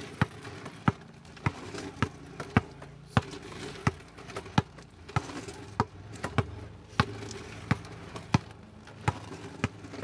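A basketball dribbled on asphalt, bouncing at a steady pace of about one and a half bounces a second.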